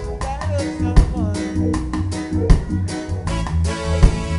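Live reggae band playing: a steady bass line and guitar, with a strong drum hit about every second and a half.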